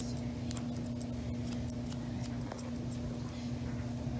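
Grooming scissors snipping fur from a dog's paw in short, irregular cuts, over a steady low hum.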